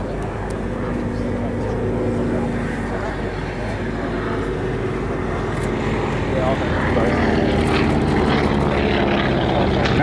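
Boeing P-26 Peashooter's 600-horsepower nine-cylinder radial engine droning as the aircraft flies a display pass, growing louder from about halfway through as it comes closer.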